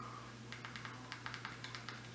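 Faint, irregular clicks of a Fire TV remote's buttons being pressed to move around the on-screen keyboard, over a low steady hum.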